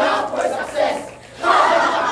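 A group of voices shouting together in two loud bursts, the second starting about one and a half seconds in: a speech choir's closing calls.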